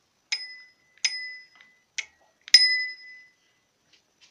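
Mini dome bicycle bell on a handlebar rung four times with its thumb lever: four bright dings, each ringing briefly, the third cut short and the last the loudest and longest.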